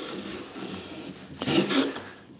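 Razor-sharp hand plane taking a stroke along the clamped edges of two walnut boards: a steady shaving hiss of the blade cutting, louder near the end of the stroke.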